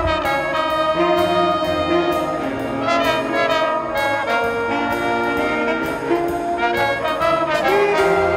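A school jazz band playing: trumpet, trombone and reeds sound held chords that shift about every second, over a drum kit's steady cymbal and drum strokes.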